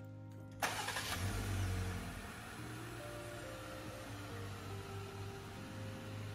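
A Jeep Wrangler engine starting about half a second in, with a deep rumble that swells briefly and settles to a steady idle. Background music plays over it.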